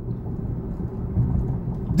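Low, steady rumble of road and engine noise inside a moving car's cabin.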